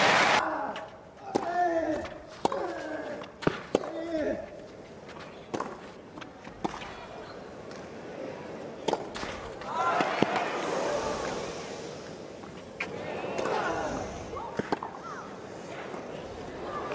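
Tennis ball struck by rackets during a rally on a clay court, sharp single hits a second or more apart, with voices from the crowd in between.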